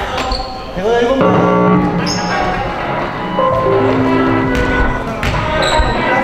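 Basketball dribbled on a hardwood gym floor, with sharp bounces, brief sneaker squeaks and held musical or voice tones in the hall.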